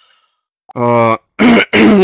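A man clears his throat with a low voiced 'ahem' about halfway through, then gives two sharp coughs in quick succession near the end.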